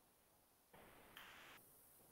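Near silence: room tone through a headset microphone, with a faint soft hiss, like a breath, about a second in.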